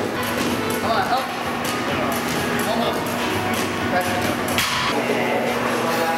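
Busy gym background: music and indistinct voices, with a few short clanks from weight equipment, the sharpest about four and a half seconds in.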